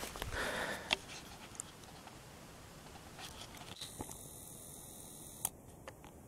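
Faint rustling of leaves and grass with a few soft clicks and footfalls, as someone moves in close to a raspberry bush while filming. After about the first second it falls to quiet outdoor background.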